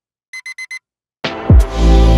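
A digital alarm clock beeping in a quick group of four high beeps, part of a once-a-second beep-beep-beep-beep pattern. About a second later loud music with a heavy bass comes in and drowns it out.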